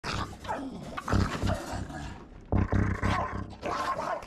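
English bulldog growling and snarling as it lunges, with louder bursts about a second in and again at two and a half seconds. It is the aggression of a human-aggressive dog.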